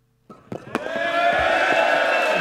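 A heavy wooden skittles ball crashes into wooden pins with a short clatter of knocks, and a crowd breaks into cheering and calling out right after.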